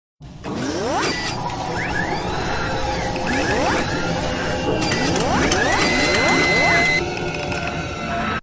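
Sound effects for an animated robot-arm intro: a series of rising mechanical whines, like servos, with sharp clicks and clanks over a low rumble, and a steady whine held for a second or so towards the end.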